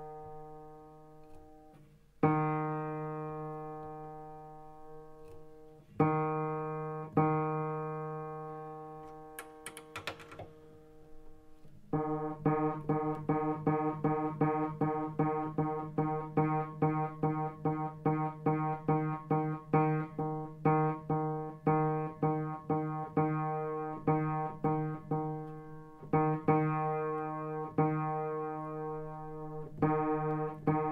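Upright piano, one note below middle C struck and left to ring out a few times, then played again and again about twice a second, while its tuning pin is turned with a tuning hammer to bring the string's pitch into tune.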